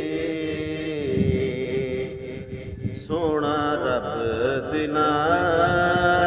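A man's solo voice singing a Punjabi Sufi kalam in a slow, ornamented melody. About three seconds in he settles into long held notes with a slow waver.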